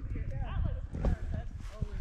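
Footsteps of a person walking over grass and dirt, a run of dull low thuds, with faint voices talking in the background.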